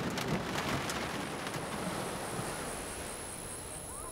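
Steady rain, with the tail of a low thunder rumble dying away just after the start.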